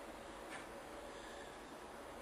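Quiet basement room tone: a faint steady hiss, with one brief soft sound about half a second in.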